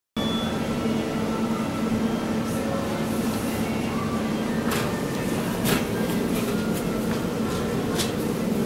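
Steady rumbling hum with a low droning tone in an elevator lobby, broken by two sharp clicks about five and six seconds in as a 2005 KONE MiniSpace traction elevator arrives and its landing doors open.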